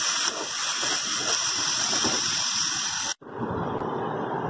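Chopped onions, tomatoes, green chillies and lentils sizzling in hot oil in a pan while a steel spatula stirs them. The sizzle cuts off suddenly about three seconds in, and a duller steady noise follows.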